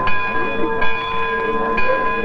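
A riverboat's ship's bell ringing, struck about once a second, each stroke ringing on under the next.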